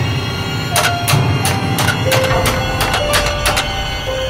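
A rapid, irregular run of about a dozen knocks, a strange sound that seems to come from inside a closet, over steady background music.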